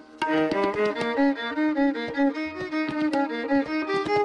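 Hindustani classical violin playing a quick run of short, stepping notes in Raag Jog.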